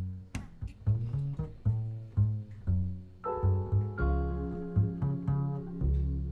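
Live jazz band opening a song: an upright double bass plucks a low, rhythmic line of separate notes. About three seconds in, sustained higher chords join it.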